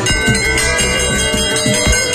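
A brass temple bell struck once at the start and left ringing with a long, steady metallic tone, over music.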